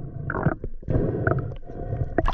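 Low, muffled underwater rumble of water moving around a submerged camera as a freediver swims with his pole spear, rising and falling irregularly.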